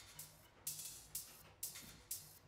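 Electronic hi-hat loop playing from Ableton, fairly faint: long hissy off-beat hats about twice a second, with a short low bass pulse between them.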